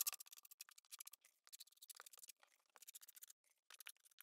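Faint, irregular ticks and scrapes of a small square-notch trowel working thinset along a shower-pan seam.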